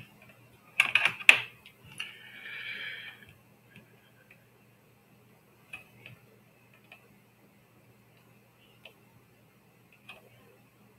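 Computer keyboard and mouse clicks: a quick cluster of loud clicks about a second in, a short rough scraping noise after it, then a few scattered light clicks, over a faint steady electrical hum.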